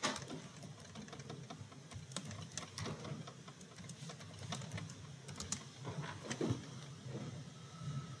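Faint computer keyboard typing: irregular quick key clicks as a calculation is keyed in.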